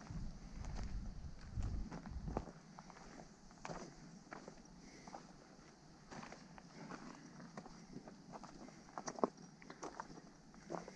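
Footsteps crunching on a dirt track strewn with leaf litter and stones, coming as irregular short steps. A low rumble runs under the first two and a half seconds, and one sharper click comes near the end.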